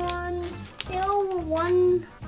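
A young child's voice held in two long, wavering notes, singing or humming rather than speaking, over quiet background music.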